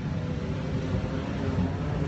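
Steady low rumble with a faint hiss: outdoor background noise, even in level.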